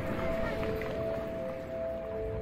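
Background music: a few long held notes over a soft, hissy wash.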